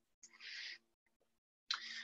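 Two short, faint breaths from a presenter pausing between sentences, one about half a second in and one near the end, over a faint steady hum from the line.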